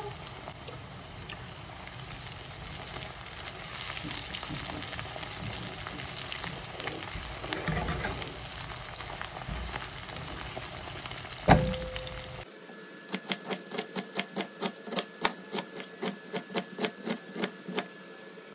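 Onion, carrot and halved cherry tomatoes sizzling in hot oil in a steel frying pan, with fine crackles and one sharp metallic knock on the pan that rings briefly about eleven seconds in. Then a knife chopping on a wooden cutting board in steady strokes, about four a second, shredding cabbage.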